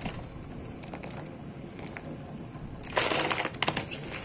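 Frozen cauliflower florets rustling and clattering as they are handled in a plastic bowl, with a burst of crackly rustling near the end over a faint steady hiss.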